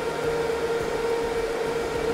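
HPE ProLiant DL560 Gen10 rack server's cooling fans running with a steady whir and a constant hum-like tone.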